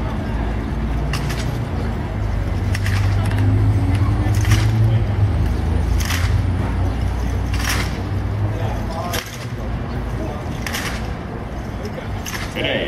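Military drill team's rifle drill: a sharp slap or crack of hands striking the rifles about every one and a half seconds, in time across the team. Under it runs a steady low engine-like hum that drops away about nine seconds in.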